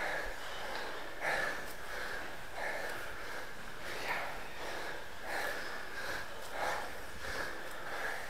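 A stair runner breathing hard from the exertion of a tower race, with a deep, noisy breath about every second and a quarter.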